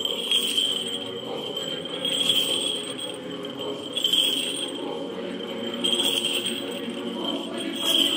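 Orthodox church choir singing a slow chant with long held notes, over the small bells of a swinging censer jingling about every two seconds.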